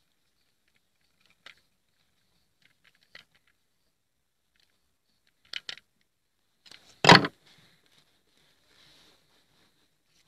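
A screwdriver working a terminal screw on a plastic pressure-switch housing, heard as a few small, scattered clicks. About seven seconds in there is a single sharp knock, the loudest sound.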